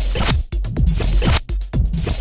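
Short electronic music sting for a channel logo: loud noisy swishes over a heavy deep bass.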